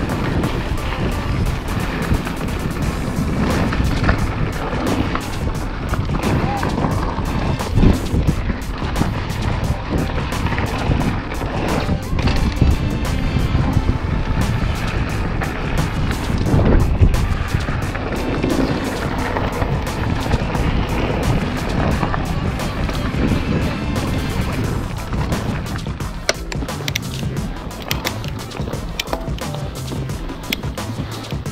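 Mountain bike descending a dry dirt trail: tyres rolling over dirt and loose stones, with the chain and frame rattling in constant short knocks over the bumps and wind noise on the action-camera microphone.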